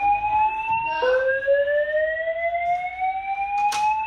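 A hotel fire-alarm voice-evacuation speaker sounding its rising whoop tone. One sweep ends about a second in, and the next climbs steadily in pitch for over three seconds. There is a single sharp click near the end.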